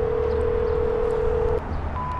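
Answering-machine beeps heard over a phone line: a long steady low tone that stops about a second and a half in, then a shorter, higher beep just before the end.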